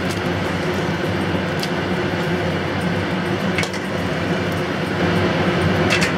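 Water bubbling at a boil in a wide pan as asparagus tips are dropped in to parboil: a steady bubbling, with two faint ticks about two seconds apart.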